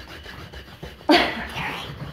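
A short, breathy huff of a person's voice about a second in, fading over most of a second, after a quiet stretch of faint rolling-pin and dough noise.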